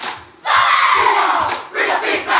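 A group of performers shouting a long call in unison, starting about half a second in after a brief lull, its pitch falling as it trails off; a second shout begins near the end.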